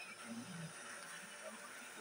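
Quiet kitchen room tone, with a faint click at the start and a faint, low murmur of a voice.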